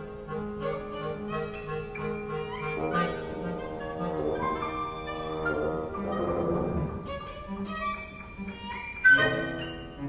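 Live ten-instrument chamber ensemble playing contemporary classical music, led by bowed strings. Sustained notes over a pulsing low repeated note give way about three seconds in to a denser chord, which swells around six seconds, and a sudden loud accent comes near the end.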